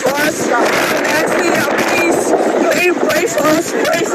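A woman's voice crying out, high-pitched and wavering, over the noise of hurricane wind and rain.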